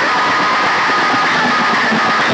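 Loud music blasted through a bank of stacked horn loudspeakers of a DJ sound system, heard close up as a dense, harsh wall of sound with a few held tones and no let-up.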